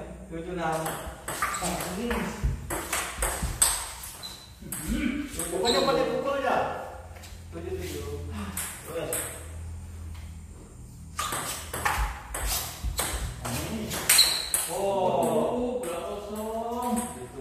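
Table tennis ball being struck back and forth with paddles and bouncing on the table, a run of sharp clicks in quick rallies broken by short pauses.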